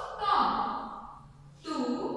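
Only speech: a woman's voice speaking, a drawn-out utterance just after the start and another beginning near the end.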